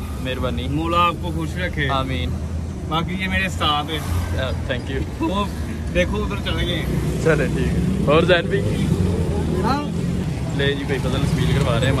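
Indistinct voices talking over a steady low motor-vehicle engine hum and street traffic.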